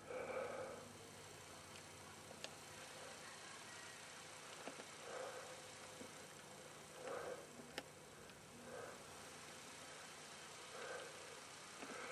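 Quiet, faint breathing close to the microphone, a soft breath about every one and a half to two seconds, with a few light clicks from the camera being handled.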